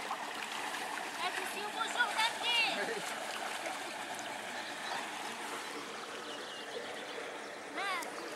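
Shallow, muddy lake water sloshing and trickling around someone wading through it, a steady watery wash with a few short splashes.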